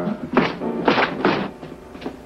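Three dull thuds in quick succession, about half a second apart, in the first second and a half, mixed with a dramatic music score; it goes quieter after them.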